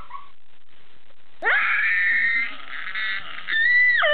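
A woman giving a loud, high-pitched, animal-like wailing call of about a second, starting partway in, then a second held high note near the end.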